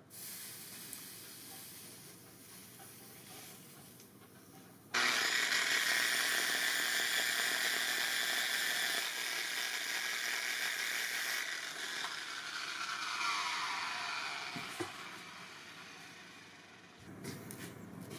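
Power-driven sanding disc grinding the brazed brass collar, a steady hiss that starts abruptly about five seconds in. It then winds down and fades as the tool is switched off and the disc spins to a stop.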